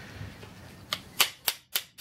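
A hardened-steel fluted pin being knocked into a car's handbrake lever assembly with the head of a pair of side cutters: a quick run of sharp metallic taps, about four a second, starting about a second in.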